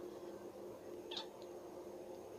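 Quiet room tone with a steady low hum and one brief, faint high-pitched squeak about a second in.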